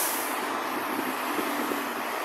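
City street traffic: an articulated trolleybus drives away while cars pass close by, giving a steady road and tyre noise with a faint tonal whine under it.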